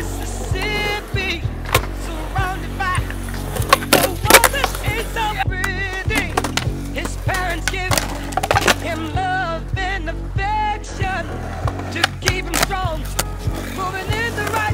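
Music track with a steady beat and a wavering melody, mixed with skateboard sounds: wheels rolling on concrete and the board clacking on pops and landings.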